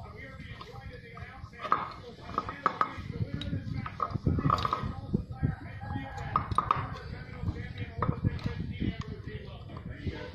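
Bamboo sticks and string being handled against a wooden plank floor, giving scattered sharp knocks and taps, with people talking over them.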